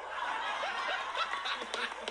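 Several people laughing together, in short broken bursts of laughter that overlap.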